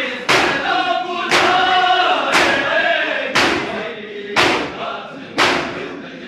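Matam: a crowd of bare-chested men beating their chests in unison, six sharp slaps about one a second, the rhythm of a noha. Between the strikes, a group of men's voices chant the noha.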